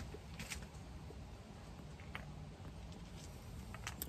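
Quiet puffing on a corncob pipe: a few faint soft lip pops and clicks at the stem, spaced a second or more apart, over a low steady outdoor background.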